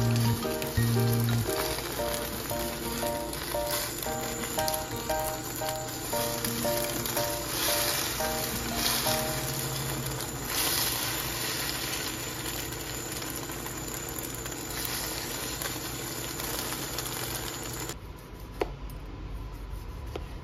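Scrambled eggs sizzling in a stainless steel frying pan as they are stirred with wooden chopsticks, with background music. The sizzling stops abruptly near the end, and a single knife tap on a cutting board follows.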